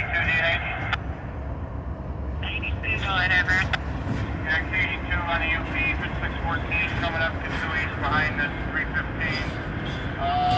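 Diesel locomotives of a BNSF-led freight train crossing a steel truss trestle, a steady low rumble throughout. Garbled voices from a railroad scanner radio come and go over it.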